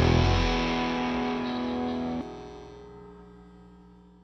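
Last chord of a rock song ringing out on distorted electric guitars, fading away. Part of it is cut off about two seconds in, and the rest dies out near the end.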